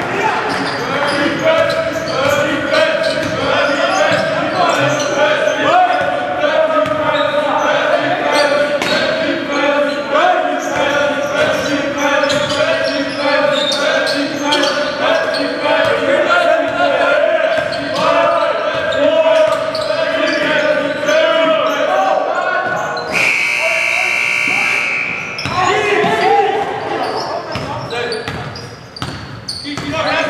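Live basketball play in an echoing gym: a ball dribbling and bouncing on the hardwood floor in quick knocks, under steady voices and shouts from players and the crowd. Near the end a loud, steady high-pitched signal sounds for about two seconds.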